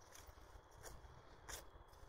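Near silence: a faint low outdoor rumble with two soft ticks, the second about a second and a half in.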